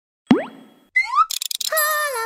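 Cartoon sound effects for an animated channel logo: a quick upward sweep about a third of a second in that dies away, then a pair of rising chirps and a short rattle about a second in, followed near the end by a held, wavering tone.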